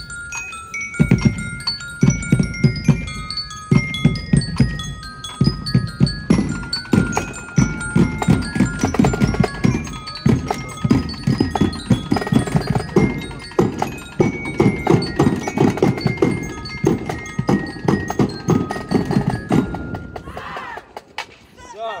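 Drum corps playing: snare, tenor and bass drums beat a fast cadence while a glockenspiel (bell lyre) carries a high melody over them. The playing stops about two seconds before the end.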